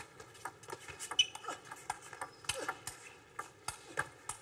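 Table tennis rally: the celluloid ball clicking sharply off the bats and the table in quick, irregular succession.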